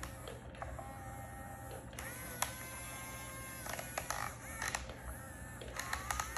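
Small electric motors of a Yigong radio-controlled toy excavator whining as the arm and bucket move, with several steady tones that start and stop and some scattered clicks.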